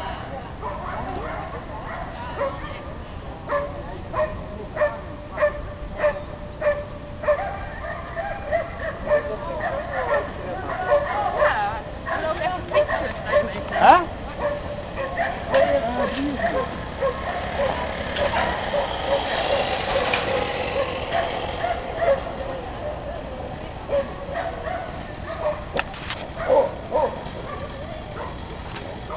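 Dogs barking excitedly, a steady string of sharp barks a little under two a second at first, then more scattered barks and yelps. About two-thirds of the way through there is a louder, noisier stretch lasting a few seconds.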